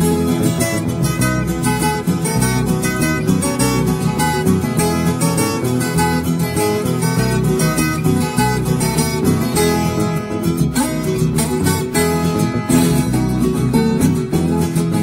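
Instrumental break in a Brazilian pagode de viola: a viola caipira picks a fast run of plucked notes over acoustic guitar accompaniment, with no singing.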